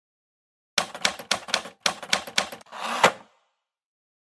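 Logo-intro sound effect: a quick, irregular run of about ten sharp clicks, like keys being typed, then a short swelling rush that ends in one louder strike.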